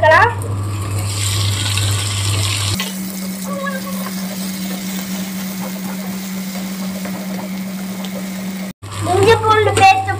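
Chopped tomatoes and onions sizzling in hot oil in a nonstick frying pan, the hiss loudest just after the tomatoes go in and settling to a steadier sizzle. A steady low hum runs underneath.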